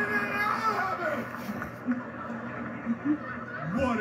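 A theatre audience laughing, with a man's voice over it, heard through a television's speaker.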